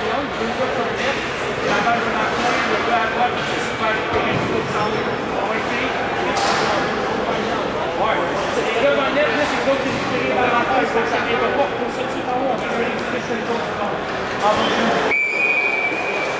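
Many voices talking at once, echoing in a large indoor arena, with scattered short knocks. Near the end a brief high steady tone sounds.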